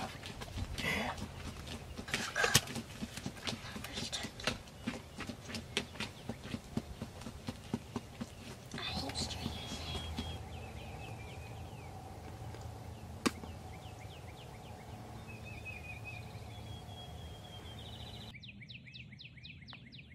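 A shot wild turkey flopping in the grass: irregular thumps of its wings beating for the first several seconds. Then small birds chirping, with a single sharp click partway through.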